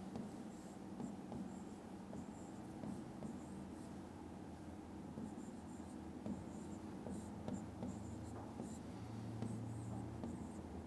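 Faint scratching and light tapping of a pen writing by hand on an interactive whiteboard screen, in short uneven strokes.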